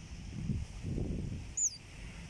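A single short, high bird chirp, falling then rising in pitch, about one and a half seconds in, over low wind rumble on the microphone.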